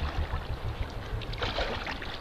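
Underwater ambience: an uneven low rumble with faint water sounds.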